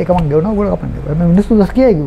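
A man's voice talking in conversation, in short voiced phrases.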